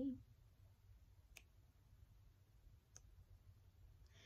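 Near silence in a small room, with a low hum. A sung note fades out at the very start, and two faint clicks follow about a second and a half apart.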